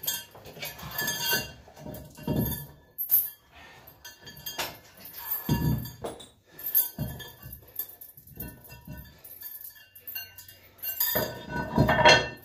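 Irregular metallic clinks and knocks from a dip belt chain and iron weight plates, some with a short ring, as a second 10 kg plate is loaded onto the belt.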